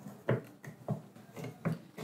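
Clamps being tightened to fix a metal router binding jig to the side of a wooden workbench: several light clicks and knocks spread about half a second apart.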